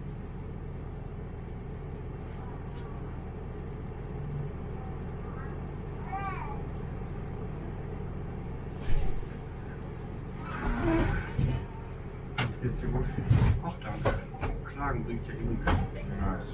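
Diesel railcar idling at a standstill, a steady low hum in the cab. A sharp knock near nine seconds, then muffled voices and a few clicks from about ten seconds in.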